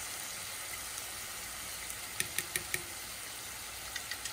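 Onions, curry leaves and chopped tomato frying in oil in an enamelled pot, a steady sizzle, with a few light clicks a little after two seconds in.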